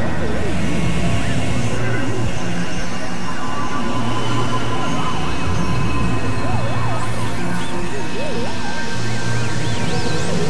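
Experimental electronic synthesizer music: a low drone that comes and goes, under many small warbling tones that slide up and down like little sirens, over a noisy wash.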